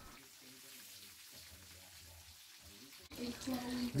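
Eggs frying in a stainless steel skillet: a faint, steady sizzle.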